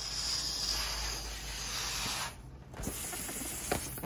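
A person blowing breath into the neck of a latex balloon: a rush of air for about two seconds, a brief pause, then a second shorter breath.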